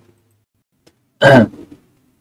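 A man clears his throat once, a short loud burst a little past halfway through, after a quiet pause with a faint click.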